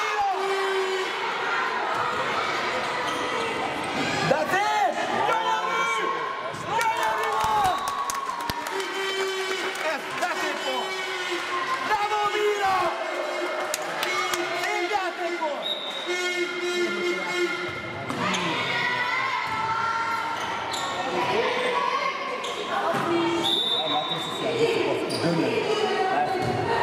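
A handball bouncing on a sports hall floor as players dribble, heard through shouting voices that echo in the large hall.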